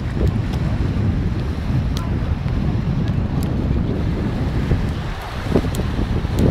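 Wind buffeting the microphone in a heavy, churning low rumble, over the wash of sea waves breaking on the shore.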